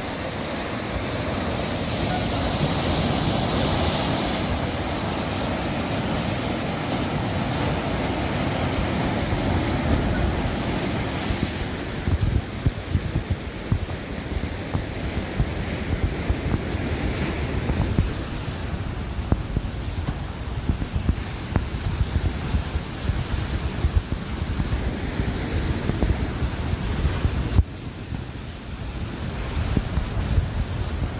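Sea surf breaking and washing over rocks, a steady rush, with wind buffeting the microphone. The gusts grow choppier from about twelve seconds in.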